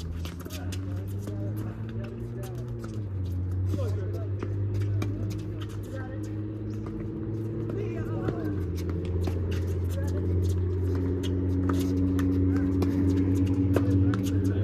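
A steady low mechanical hum whose pitch shifts in steps a few times, with voices in the background and many scattered sharp clicks.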